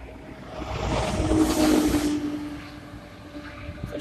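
A box truck passing close by and driving on ahead, its engine hum and tyre noise swelling about a second in, then fading over the next two seconds.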